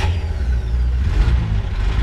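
A steady low rumble of a vehicle engine running, which cuts off abruptly at the end.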